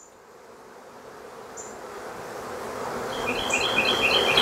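A crowd of honeybees buzzing around the entrance of a nuc box as they are smoked back inside, the buzz growing steadily louder. A few quick high chirps sound in the second half.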